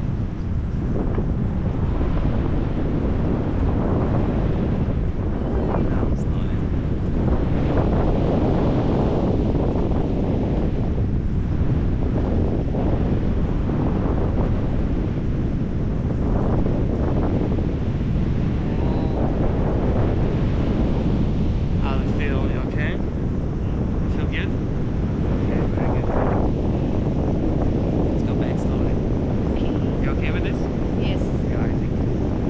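Wind rushing over the microphone of a pole-mounted camera on a tandem paraglider in flight: a loud, steady rush weighted toward the low end, with no breaks.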